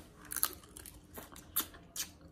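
A person chewing crab leg meat close to the microphone, with a few short, sharp wet clicks and smacks of the mouth.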